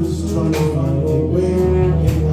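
A live band playing: held melody notes over a steady bass line, with drum hits.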